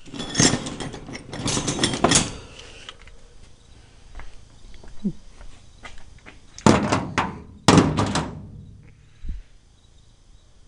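Two bursts of knocking, rubbing and thumping from things being handled close to the microphone, the first right at the start and the second about seven seconds in, with a brief squeak in between.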